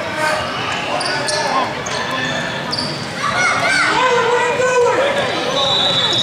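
Basketball bouncing on a hardwood gym court amid overlapping voices of players and spectators, echoing in a large hall.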